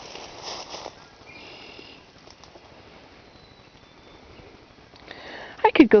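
Footsteps and rustling in dry leaf litter and brush in the first second, a short high-pitched call about a second and a half in, then faint outdoor quiet until a voice begins near the end.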